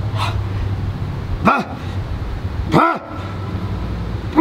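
A dog barking: two short barks about a second and a half apart, with a fainter one just after the start, over a steady low hum.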